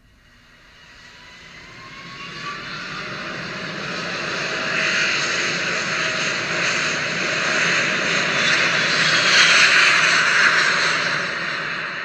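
Jet airliner's engines heard from inside the cabin, building to takeoff power: a whine rises in pitch over the first few seconds under a roar that grows louder, peaks about three-quarters of the way in, then eases slightly.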